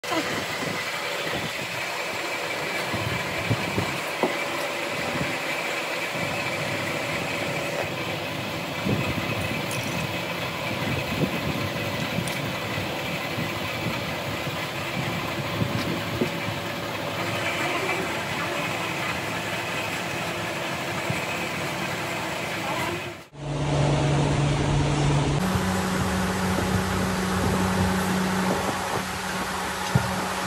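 Steady workshop machinery noise with a few scattered clicks and knocks; about 23 s in it cuts to a louder machine drone with a low steady hum that steps up in pitch a couple of seconds later.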